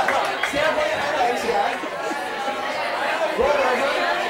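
Several people talking at once: chatter of a small crowd in a room.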